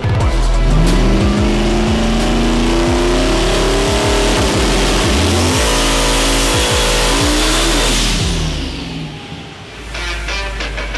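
Small-block Ford V8 in a Fox-body Mustang drag car making a full-throttle pull on a hub dyno, with background music. The engine note climbs in pitch, breaks off about five seconds in, climbs again, then falls away and fades as the pull ends.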